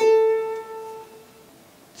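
A single note, the A at the 10th fret of the second string, picked once on a PRS electric guitar and left to ring, fading out over about a second and a half.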